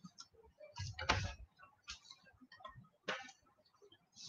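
A few faint, short clicks and soft ticks, separated by near silence, with the two clearest about a second in and about three seconds in.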